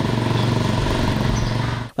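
Motorcycle engine running steadily close by, a constant low drone that cuts off suddenly near the end.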